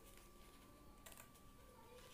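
Faint snips of scissors cutting through thin paper: a click at the start and another snip about a second in, over a low steady electrical hum.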